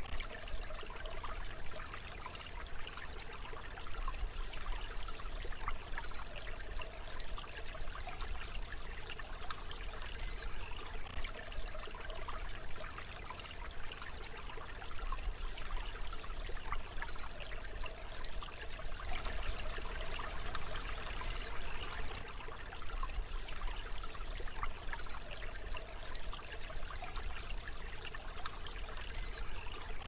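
Babbling brook: stream water trickling steadily.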